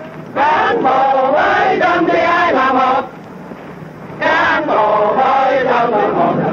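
A large group of men chanting in unison while marching, in two loud phrases of a few seconds each with a pause of about a second between.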